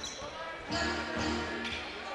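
Basketball game sound: background music with sustained tones over the noise of the gym, and a basketball being dribbled on the hardwood court.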